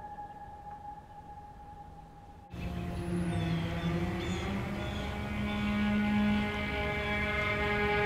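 Ominous film score: a faint held note, then about two and a half seconds in a sudden, louder swell of many sustained, droning tones that keeps building.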